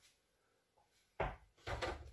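A small ball knocking against hard furniture or the floor in a small room: one sharp knock just over a second in, then softer knocks near the end.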